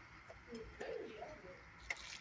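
A dog whining softly at a low pitch, wavering for about a second as a hand holds something out to its muzzle. A single sharp click comes near the end.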